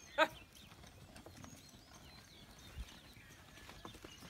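A pair of yoked bullocks pulling a wooden plough through soil, with faint scattered clicks and knocks. A short, loud, pitched call sounds once about a quarter second in.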